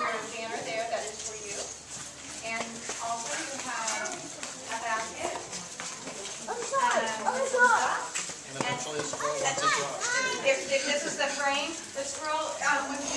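Indistinct chatter of several voices talking over one another, with a higher, livelier voice standing out about seven seconds in.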